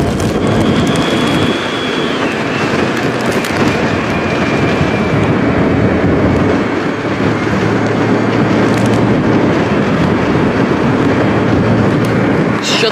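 Steady road and wind noise from a vehicle moving at speed, with a faint high whine that steps down in pitch about two seconds in and fades out soon after.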